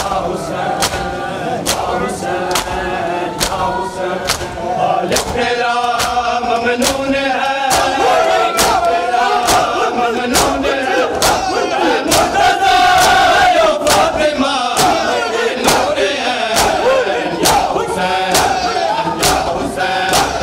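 A crowd of men doing matam: bare-chested mourners striking their chests with open hands in unison, sharp slaps a little more than once a second. Over the slaps they chant a noha loudly together, with a crowd's shouted voices.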